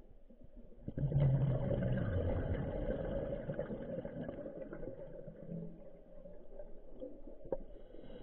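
Scuba diver breathing out through the regulator underwater: a rush of exhaust bubbles starts about a second in and fades away over the next few seconds, with a thin hiss of the next breath in near the end.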